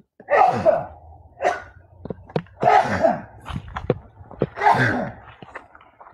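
A man's sneezing fit: a run of separate sneezes, the strongest about half a second, three seconds and five seconds in.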